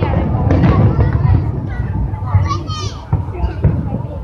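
Aerial fireworks rumbling and popping as a burst fades, with a few sharp pops, under the chatter of a watching crowd; a child's high-pitched voice rings out about halfway through.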